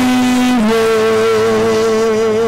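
Slow worship song: a singing voice holds a long note with a slight vibrato, moving to a higher held note about half a second in, over a steady sustained accompaniment.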